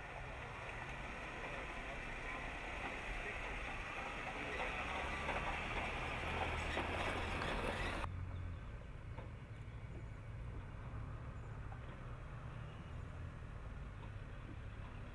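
Jeep Chief concept 4x4 crawling slowly over slickrock: engine running at low speed with tyre and rushing noise. About eight seconds in the sound drops abruptly to a quieter, lower engine hum.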